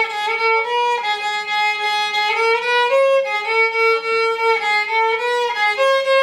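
Solo violin playing a slow melody, one held note at a time, with the notes changing every half second to a second.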